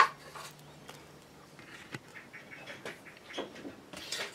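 A brief knock at the start, then faint scattered clicks and scratches of hands handling an ABS plastic knife sheath and thin wooden strips on a workbench.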